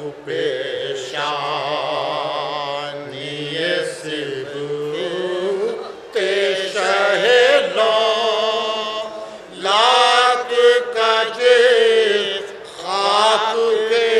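Soz-khwani: a male sozkhwan chanting an unaccompanied Shia elegy (soz) in long, wavering held phrases with short breaths between them, other men's voices sustaining a lower line beneath him.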